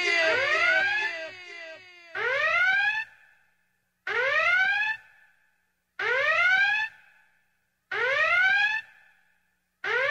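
Electronic whooping alarm sound effect: a rising tone about a second long that repeats roughly every two seconds, five times. It opens with fading, overlapping echoes of the tone.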